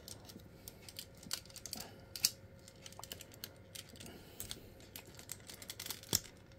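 Light, irregular clicks and taps of a plastic spudger prying at the plastic parts of a MechFanToys MFT F-03 42-SolarHalo transforming robot figure, with one sharper click about two seconds in.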